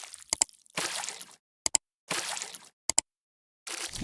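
Subscribe-button animation sound effect: short whooshes alternating with quick double mouse clicks, three double clicks in all, with another whoosh starting near the end.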